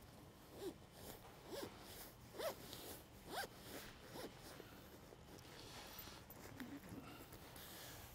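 Zipper slider being drawn along the zipper of a vinyl cushion cover: a faint series of short zipping strokes, each rising in pitch, about one a second in the first half.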